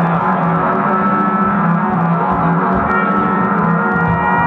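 Live band playing: electric guitar and drum kit over a repeating low note figure, with trumpet.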